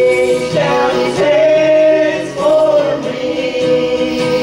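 A small gospel group singing in harmony, several voices holding long notes, with acoustic guitar accompaniment. The held chord shifts up about half a second in and breaks briefly a little past two seconds before the next long note.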